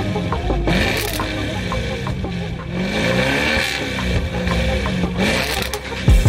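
Audi RS7's twin-turbo V8 revved repeatedly while standing, its exhaust pitch rising and falling several times, with background music and a steady beat underneath.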